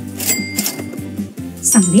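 Cash-register 'ka-ching' sound effect: a sharp metallic strike about a quarter second in, its bell ringing on steadily for over a second, over background music.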